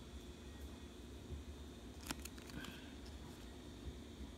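Quiet handling: a few light clicks about halfway through as a cardboard flashcard box is turned over in the hand, over a low steady room hum.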